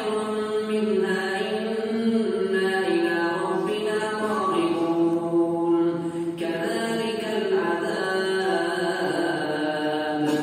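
A man reciting the Qur'an aloud in Arabic in a slow, melodic chant, holding long drawn-out notes with a short breath about six seconds in. The voice is amplified by a microphone and echoes through a large mosque hall.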